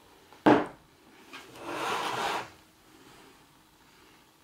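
A sharp knock about half a second in, then about a second of rubbing and scraping as a mirror is shifted on the desk.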